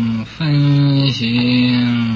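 A man chanting a Chinese Buddhist sutra verse slowly, each syllable drawn out into a long, steady note with short breaks between them.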